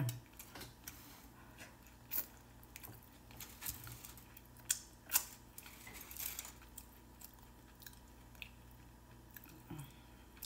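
A person chewing a mouthful of burrito close to the microphone, with scattered sharp clicks and crinkles as the foil-wrapped burrito is handled.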